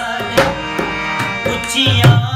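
Punjabi folk music: a harmonium holds steady chords while a dholak barrel drum plays a few sparse strokes. A singer's voice comes in near the end.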